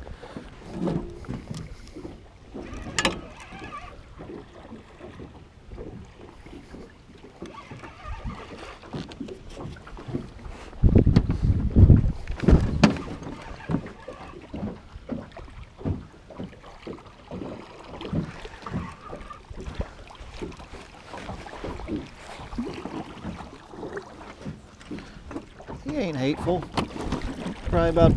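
Wind buffeting the microphone and water moving around a small boat, with scattered clicks and knocks while a fishing reel is cranked in against a hooked catfish. A louder low rumble of wind comes about eleven seconds in.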